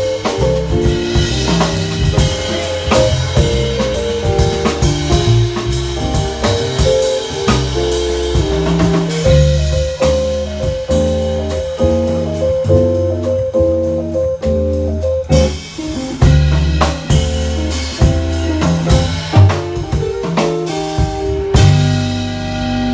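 Live afro-jazz band playing: a drum kit groove over an electric bass line, with electric guitar and keyboards. A repeated higher melodic note runs through the middle of the passage.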